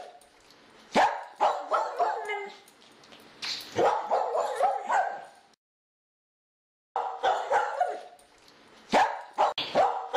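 A dog barking and yipping in quick bursts. The sound cuts out abruptly about five and a half seconds in and starts again about a second and a half later.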